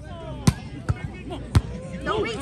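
Volleyball struck by hands during a rally: two sharp smacks about a second apart, with a lighter hit between them, over background voices.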